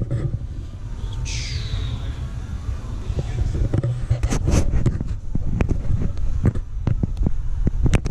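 Handling noise from a handheld action camera carried through a room: a steady low rumble, a brief falling squeak about a second in, and a run of sharp clicks and knocks in the second half.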